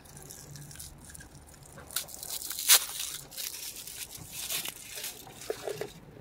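Soft rustling and crinkling of packaging being handled as a shrink-wrapped bath bomb is taken out of a box of crinkle-paper shred, with one sharper click near the middle.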